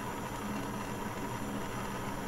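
Jeweler's gas soldering torch flame hissing steadily over a faint low hum, heating a metal piece to flow solder.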